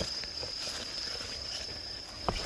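Crickets singing in a steady night chorus, one continuous high-pitched trill.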